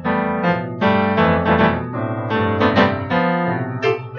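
Solo piano playing an instrumental piece: a run of struck notes and chords over sustained bass notes.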